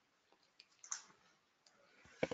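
Near silence with a few faint, short clicks, the loudest about a second in.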